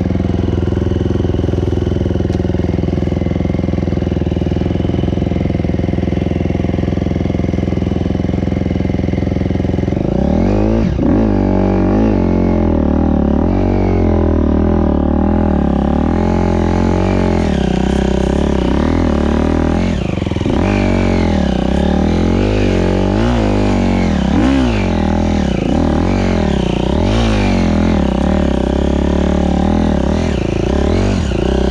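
KTM dirt bike engine running at a steady pitch for about ten seconds, then revving up and down over and over as the throttle is worked off-road.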